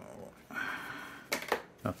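Paper and thin cardboard packaging being handled: a soft rustle, then two quick sharp paper or cardboard taps near the end.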